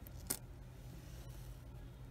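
Pennies handled by hand: one light click of coin on coin about a third of a second in as a cent is picked out of a spread roll, then faint handling over a low steady hum.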